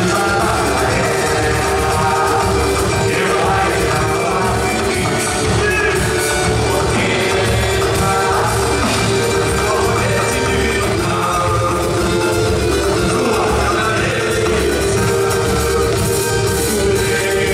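Live Brazilian samba band music: a small four-string guitar strummed over hand drums and a drum kit, with a man singing.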